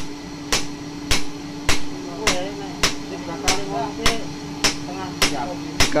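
Blacksmith's hand hammer striking red-hot steel on a small anvil: a steady rhythm of sharp blows, about two a second, eleven in all.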